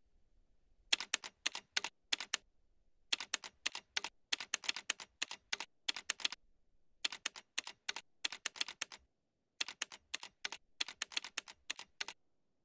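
Keyboard typing sound effect: runs of rapid key clicks separated by short pauses, starting about a second in.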